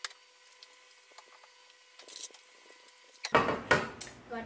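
Faint clicks and a soft rustle as grated cheese is tipped from a plastic tub into a mixing bowl, then a louder burst of handling noise near the end as the tub is handled and set down.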